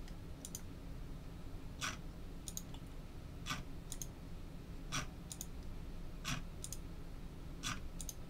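Computer mouse clicking repeatedly, about once every one and a half seconds, each round a sharper click and a lighter double tick, as the button to randomize the list again is pressed over and over. A faint steady hum lies underneath.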